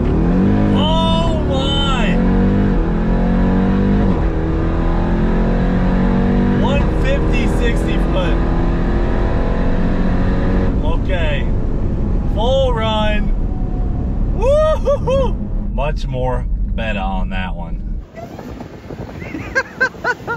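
Jeep Grand Cherokee Trackhawk's supercharged V8 heard from inside the cabin, revving up sharply at the start and then running loud and steady at speed. About 18 seconds in the engine sound drops away sharply.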